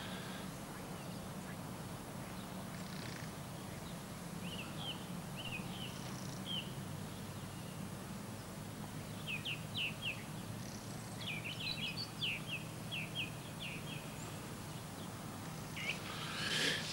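Birds calling in two runs of short, high chirps, one about a quarter of the way in and a busier one past the middle, over a steady low hum.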